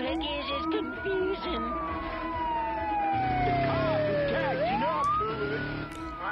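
Cartoon siren sound effect wailing: one tone rising for about a second, falling slowly for several seconds, then rising again near the end. A low steady hum joins about halfway through.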